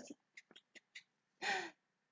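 A few faint, brief clicks, then about one and a half seconds in a woman's short breathy gasp, falling in pitch.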